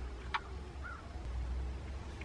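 Quiet outdoor ambience with a low steady rumble and two brief bird calls, a sharp one about a third of a second in and a fainter one near the middle.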